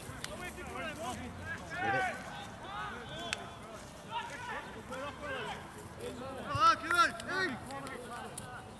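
Footballers shouting and calling to each other during play, several voices, with the loudest shouts near the end.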